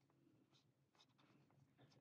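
Near silence, with a few faint scratchy rubbing strokes from a cotton swab cleaning inside the plastic eye socket of a teddy bear's face.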